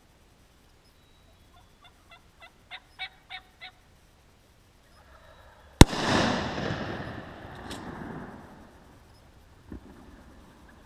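A series of about eight turkey yelps, roughly four a second and growing louder, then a single very loud shotgun blast about six seconds in, its report rolling away over the next few seconds. A dull thump near the end as the shot turkey flops on the ground.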